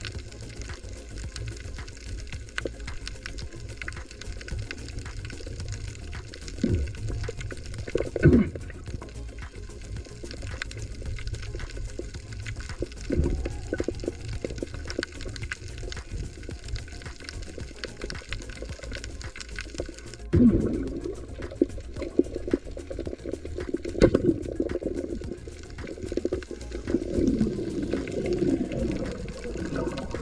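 Underwater sound heard through a camera housing: a steady low rumble and hiss thick with small crackling clicks, with several louder short whooshing bursts of water movement.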